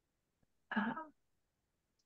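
A single short hesitant "uh" from a person's voice, otherwise near silence.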